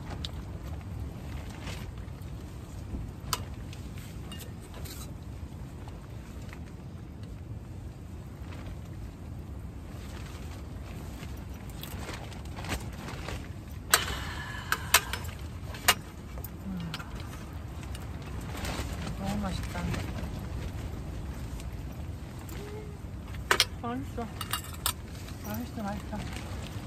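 Metal ladle and spoons clinking against aluminium camping bowls and a cooking pot as soup is served, a few sharp clinks in the middle and a short run of them near the end, over a steady low rumble.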